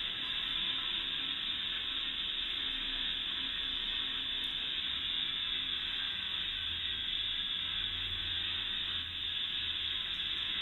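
A steady, even rushing hiss with no distinct events, and a faint low rumble joining it for a few seconds past the middle.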